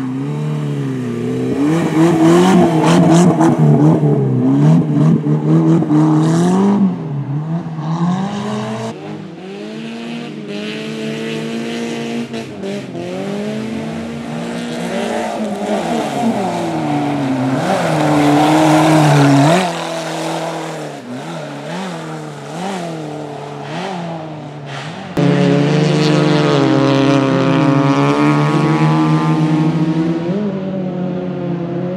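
Suzuki Swift racing car engine revving hard. Its pitch climbs and drops again and again with gear changes and throttle lifts through the corners of a dirt track, and it gets suddenly louder about 25 seconds in.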